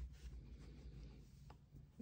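Very faint soft rustling of hands pulling loops of giant chunky yarn through hand-crocheted stitches, close to near silence.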